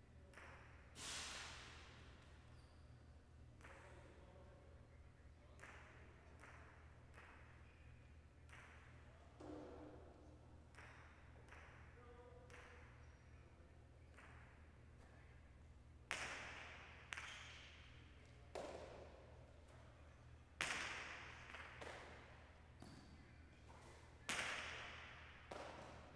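Jai alai pelota striking the court wall and floor: sharp cracks that ring out through the large hall. There is one crack about a second in, then a run of about five more in the second half, over a steady low hum.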